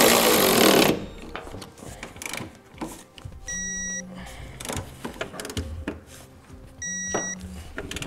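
Cordless impact wrench with a three-quarter inch socket running in a short loud burst on a bracket bolt, then stopping about a second in. Scattered clicks of the wrench work follow, with two short electronic beeps about three seconds apart.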